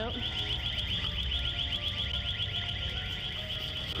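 Alarm in a store sounding a high-pitched tone that pulses rapidly, many times a second. It cuts off suddenly at the end.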